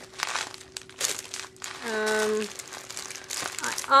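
Plastic bag of beads crinkling as it is handled, in scattered short rustles over the first couple of seconds, with a woman's brief held hum about halfway through.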